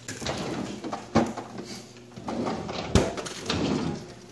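Plastic freezer drawer of a National refrigerator being pulled open, sliding and rattling, with two sharp knocks, one about a second in and a louder one about three seconds in.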